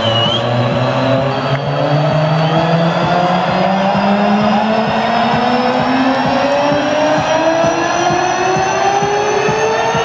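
Electronic dance music build-up played loud over an arena sound system: a synth riser of several tones climbing slowly and steadily in pitch, over a dense wash of sound.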